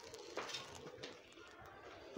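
Faint background noise, with a faint tick about half a second in and a faint steady tone for a moment after it.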